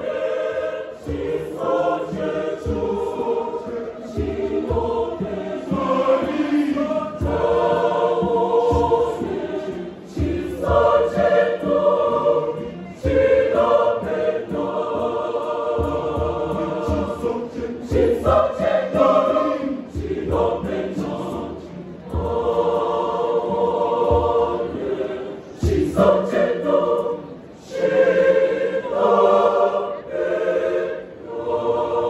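Large mixed choir singing a Shona choral song in full harmony, phrase after phrase with short breaths between them.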